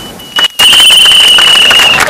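A loud, shrill whistle blast on one steady high pitch, held for about a second and a half over the noise of a street crowd and traffic. It starts abruptly about half a second in, after a brief quiet.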